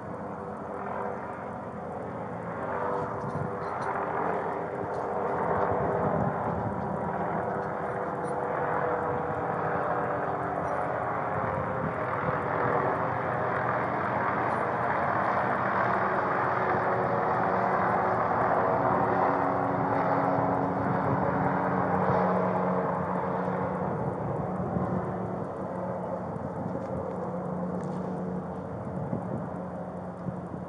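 A motor running steadily: a rushing noise with a steady hum underneath, which grows louder toward the middle and eases off near the end.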